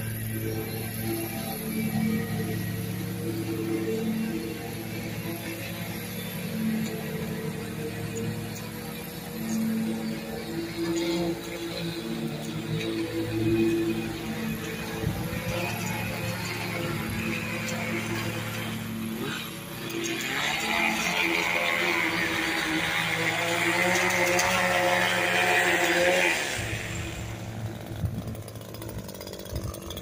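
Background music playing over a two-stroke straight-shaft power edger running as it cuts along a concrete driveway edge. In the second half the edger gets louder for several seconds, then drops off about three seconds before the end.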